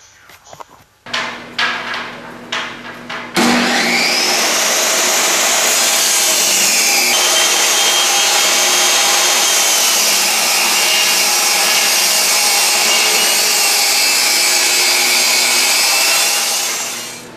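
Craftsman table saw cutting wooden strips: a few knocks, then the saw switches on about three seconds in, spins up with a rising whine and runs steadily as the wood is fed through the blade.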